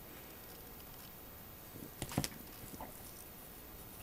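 Faint room tone with a few small handling clicks and ticks. The two clearest clicks come close together a little after two seconds in.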